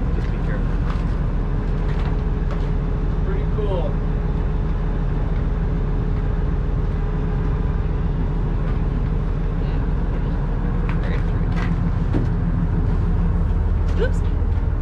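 A boat's engine running steadily as the boat motors along, a constant low drone, with faint voices heard now and then over it.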